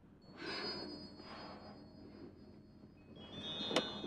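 Faint rustling of a cloth and bedsheets as a damp cloth is dabbed against skin, over thin steady high-pitched tones, with more tones joining about three seconds in and a short click near the end.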